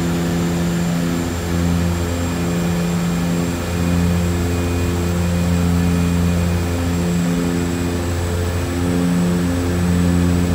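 Cabin noise of a de Havilland DHC-6-300 Twin Otter on final approach: the twin Pratt & Whitney PT6A turboprops and their propellers make a steady low drone with a thin high turbine whine. The low drone swells and fades in a slow, regular beat every second or two.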